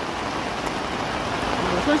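Heavy rain pouring down steadily onto standing floodwater, an even, continuous hiss.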